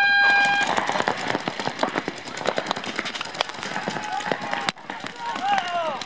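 A paintball game's electronic start beep ends early on. Rapid popping of many paintball markers firing at once follows as players break out. Voices shout near the end.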